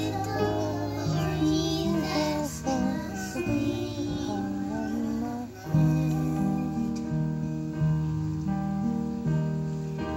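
A children's choir singing a song over instrumental accompaniment.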